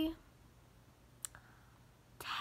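Quiet room tone broken by one short, sharp click a little past halfway, with a fainter click just after it.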